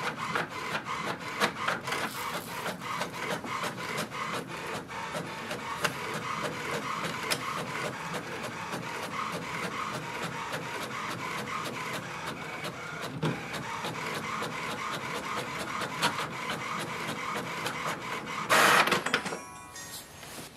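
HP Envy 6430e inkjet printer printing a page: a continuous busy run of fine ticks and whirring as the print carriage shuttles and the paper is fed through, with a short louder burst near the end as the page comes out.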